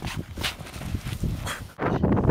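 Running footsteps on grass, with irregular thumps and cloth rustling against the microphone of a camera carried at a run.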